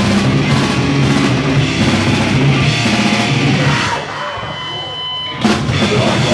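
Grindcore band playing live at full volume, with distorted guitars, bass and fast drums. About four seconds in the band drops back to a thinner sound with a lone held guitar tone, then crashes back in with a hit.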